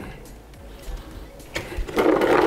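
Cooked maize being tipped from a steel pot into a plastic bucket: quiet sliding and handling sounds, with a few clicks and knocks near the end as the pot and bucket are moved. Faint background music underneath.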